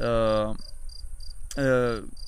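Crickets chirping evenly, about three chirps a second, under a man's two drawn-out hesitation sounds, one at the start and one near the end, which are the loudest thing.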